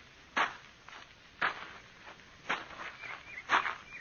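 Radio-drama sound effect of a man's footsteps coming slowly closer, four steps about a second apart.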